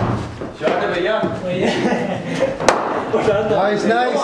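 People talking over one sharp crack about two-thirds of the way through, a cricket bat striking a hard cricket ball in an indoor net.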